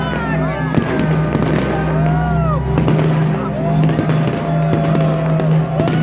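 Fireworks going off, with many sharp bangs and crackles in quick succession. Underneath are the shouting voices of a crowd and music with a steady low hum.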